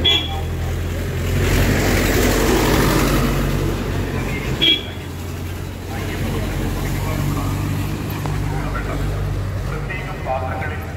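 Tractor's diesel engine running close by, a steady low drone that swells louder between about one and three and a half seconds in. Two brief high-pitched tones cut through, one at the start and one just before the middle.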